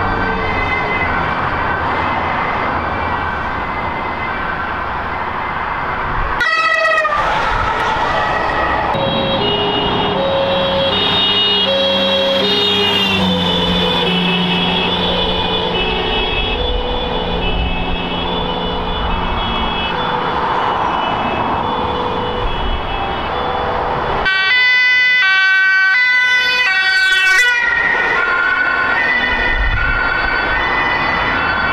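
Emergency-vehicle two-tone sirens, several overlapping, each alternating between two pitches about once a second. Short stretches of a faster, rapidly switching tone come about six seconds in and again for about three seconds near the end, over the low rumble of traffic.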